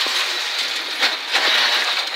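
Ford Escort Mk2 rally car driving at speed, heard from inside the cabin as a steady engine and road noise, with a couple of sharp knocks about a second in.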